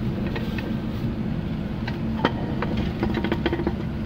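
Steady low rumble of the truck's idling engine, under light clicks and crinkles of a plastic sheet being handled on a cast-metal tortilla press. One sharper click comes about two seconds in.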